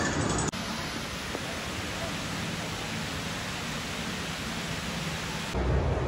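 A steady, even rushing noise that starts suddenly about half a second in and cuts off just before the end.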